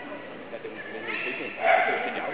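Agility dog barking at her handler during the run, with the loudest bark a little after halfway.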